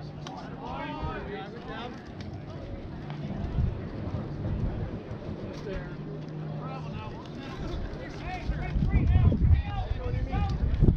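Indistinct calls and chatter from players and spectators at a baseball game, not close to the microphone, over a steady low hum; a low rumble rises near the end.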